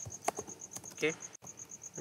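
Computer keyboard typing, a few light key clicks, with a steady high-pitched pulsing in the background at about eight beats a second.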